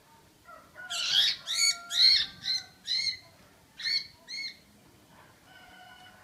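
Red-whiskered bulbul giving a rapid run of about eight short calls, each rising and falling in pitch, from about a second in to about four and a half seconds in.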